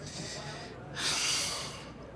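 A man's breathing, with no words: a soft breath, then a louder, longer breath out, like a heavy sigh, about a second in.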